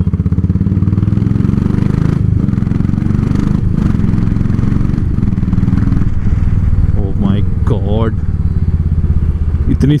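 Royal Enfield Classic 500 single-cylinder engine running steadily while the motorcycle cruises at road speed, with a low, even beat. The bike is freshly serviced: oil changed, exhaust gasket replaced, and a broken rectifier plate that had caused heavy vibration renewed, and it now runs smooth.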